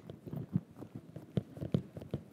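FitQuest upright exercise bike being pedaled, almost completely silent: only a faint low hum with soft, irregular knocks now and then.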